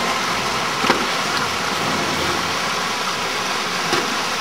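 Shallow stream rushing over rocks: a steady wash of water noise, with a short knock about a second in.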